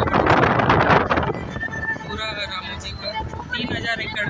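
Wind and road noise of a moving vehicle, heaviest in the first second and easing off after. A person's voice with a wavering pitch comes in over it in the middle of the stretch.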